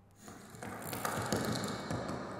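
Sound-installation piece of everyday objects played as instruments, heard over loudspeakers: a dense clatter of rapid clicks and rattles that starts about a quarter second in and grows louder through the second half.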